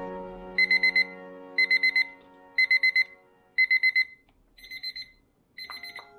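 Digital countdown timer beeping as its 25-minute pomodoro countdown runs out. It gives short bursts of about four quick high-pitched beeps, one burst each second, and the later bursts are quieter.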